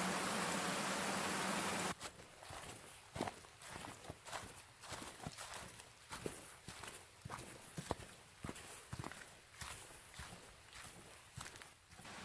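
Rushing creek water for about two seconds, then after a sudden cut, footsteps through dry fallen leaves, a step about every half second to second.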